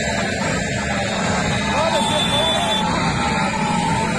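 Several men's voices talking over one another, with a motorcycle engine running steadily underneath.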